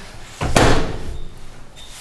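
Microwave oven door slammed shut once, about half a second in, the sound fading over the next half second.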